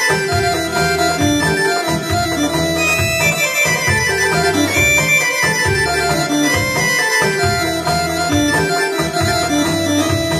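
Electronic arranger keyboards playing a Greek dance tune: a melody over a bass and rhythm accompaniment.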